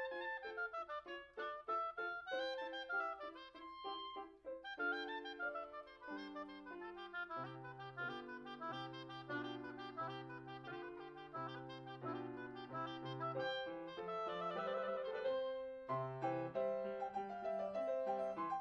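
Oboe playing a classical melody with grand piano accompaniment; the piano's low notes come in about five seconds in.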